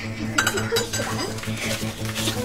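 Kitchen clatter: a metal frying pan and utensils clinking and knocking on a gas stove, several sharp clinks in the first second.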